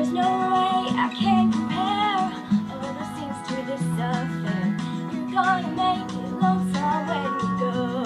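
Acoustic guitar strummed and picked during an instrumental stretch of the song, with a wavering melody line above the chords.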